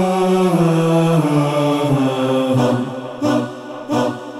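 Solo male voice chanting in the style of the Islamic call to prayer, holding long ornamented notes that step down in pitch. Near the end the held line fades and a few short sharp beats sound.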